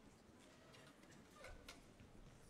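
Near silence in a quiet hall, broken by a few faint clicks and taps from the band members handling and raising their wind instruments, the clearest ones in the second half.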